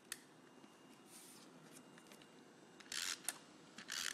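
Tombow Mono adhesive tape runner being pressed and drawn across a paper star: quiet clicks and a short scratchy rasp about three seconds in as the tape is laid down.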